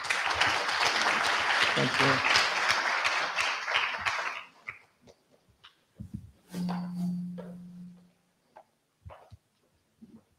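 An audience applauding for about four and a half seconds, then dying away. About a second and a half later a steady low hum is held for over a second, and a few scattered knocks follow.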